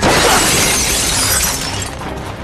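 Window glass shattering as a person crashes through a window: a sudden crash right at the start, followed by a spray of breaking fragments that dies away over about a second and a half.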